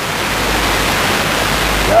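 A steady rushing noise with no pitch, growing a little louder toward the end.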